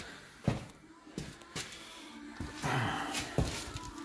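Handling noise as a phone camera is carried: a few light knocks and, about three seconds in, a short rustle.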